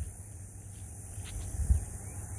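Quiet outdoor background: a low rumble on the microphone, with one soft thump about three-quarters of the way through.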